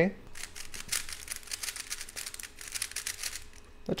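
YJ textured plastic 3x3 speed cube being turned by hand: a rapid, irregular clatter of clicks as its layers rotate. The cube is tightly tensioned.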